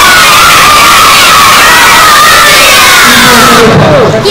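A hall full of schoolchildren shouting and cheering together, loud and continuous, breaking off near the end.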